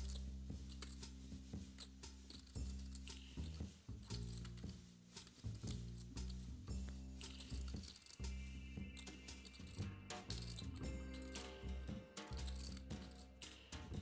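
Quiet background music with a steady low bass pattern, over light, scattered clicks of clay poker chips being handled.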